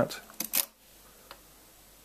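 The small zeroing lever on the side of a Comptometer Super Totalizer mechanical calculator is pulled to reset the totalizer to zero: two quick mechanical clicks about half a second in, then a faint tick.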